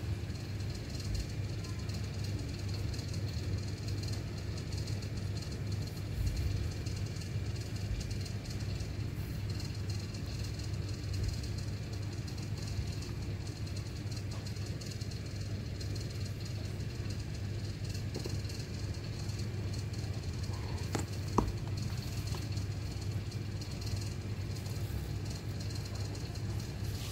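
Steady low background hum with a faint high hiss, and a single short click about 21 seconds in.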